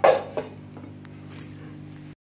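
A stainless-steel lid clanking on a steel serving pot, followed by a lighter click about half a second later and a faint tick.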